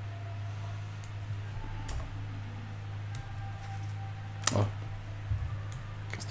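Steady low electrical hum with a few scattered computer-mouse clicks; the loudest click, with a slight thud, comes about four and a half seconds in.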